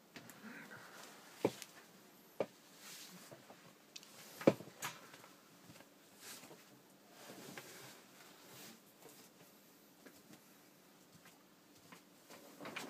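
A few sharp knocks and clicks, the loudest about four and a half seconds in, among soft rustling in a small room, with no music playing.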